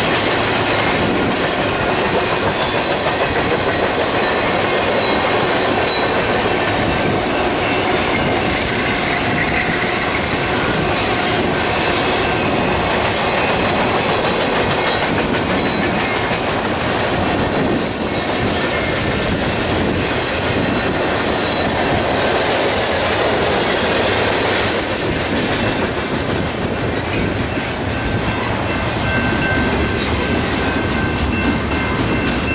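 BNSF double-stack intermodal freight train rolling past: a steady clatter of wheels on rail from the container cars, with faint thin high squeal tones from the wheels.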